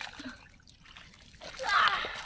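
Hands splashing and squelching in shallow muddy water as they grope through the mud, with a child's voice calling out briefly near the end.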